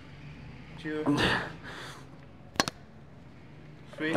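A man's strained grunt, falling in pitch, with a hard exhale as he pushes a rep on a plate-loaded incline chest press machine. About two and a half seconds in there is a brief, sharp double metal clack from the machine.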